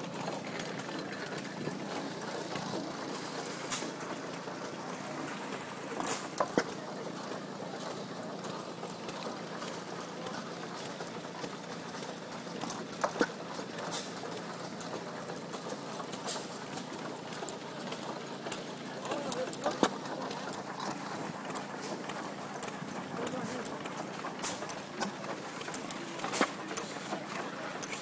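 IHC Nonpareil Famous vertical hit-and-miss gasoline engine running, firing now and then in sharp single pops several seconds apart as it coasts between firings.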